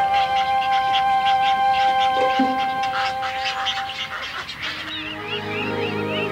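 Film-score music with long held notes, over rapid repeated calls of heron chicks. About five seconds in, the music moves to a new, lower chord and a run of quick rising-and-falling chirps begins.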